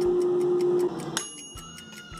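Clock ticking quickly, about six ticks a second, under a steady low tone that stops just under a second in. Then a single bright bell ding rings out a little over a second in and fades, marking that the time is up.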